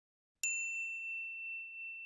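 A single high, bell-like ding, struck once about half a second in and ringing on as it slowly fades: the chime of an animated logo sting.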